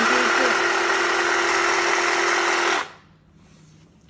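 Stihl cordless hedge trimmer running with its blades reciprocating: a steady electric motor whir with a constant hum. It runs for nearly three seconds and then stops abruptly.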